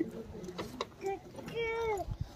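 Voices speaking briefly and softly, one drawn-out call near the end, with a few light clicks and knocks.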